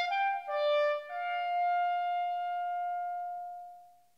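Viola and clarinet duo: a few short notes played together, then a single long held note that fades away near the end.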